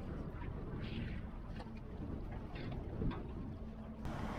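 Quiet outdoor ambience: a steady low rumble of wind on the microphone, with a faint low hum and scattered faint short chirps.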